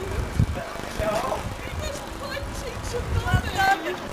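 Wedding guests chatting and calling out to one another over each other, no single clear speaker, with low rumbles and thumps on the microphone.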